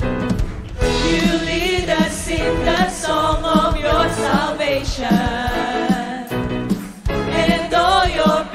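Live worship music: a group of singers performing a praise song with a band of keyboard and drums, with a brief dip in level about seven seconds in.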